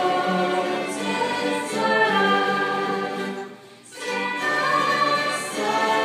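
String orchestra of violins and other strings playing a slow hymn, with voices singing along. The music thins out briefly about three and a half seconds in, between phrases, then picks up again.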